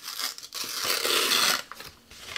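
A sheet of paper being torn by hand: a short rip, then a longer, slower one lasting about a second.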